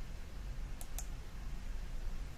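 Two quick computer clicks about a fifth of a second apart as the presentation is advanced to the next slide, over a low steady background hum.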